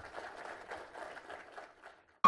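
Audience applauding, faint, dying away near the end.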